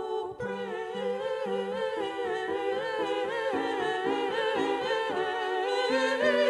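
A small group of women singing with piano accompaniment, their voices carrying the melody with vibrato over held piano notes.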